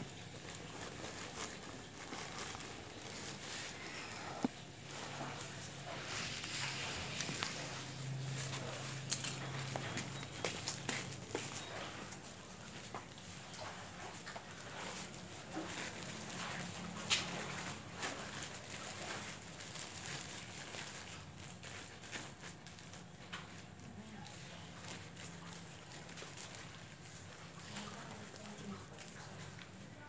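Hands scooping loose potting soil and handling black plastic polybags: scattered soft crackles, rustles and taps, over a faint low hum.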